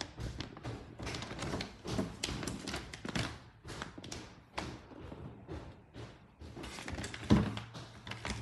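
Clear plastic bag holding a rubber seal kit crinkling and rustling irregularly as it is handled. There is a louder thump about seven seconds in.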